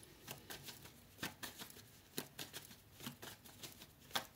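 Tarot cards being handled and shuffled by hand: faint, irregular card flicks and taps, two or three a second.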